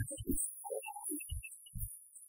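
Quiet electronic keyboard music: a few low, pulsing bass notes with scattered faint higher notes between them.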